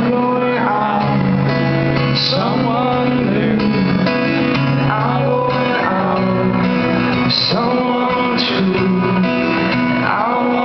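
Amplified acoustic guitar strummed in a live solo performance, with a male voice singing along at times.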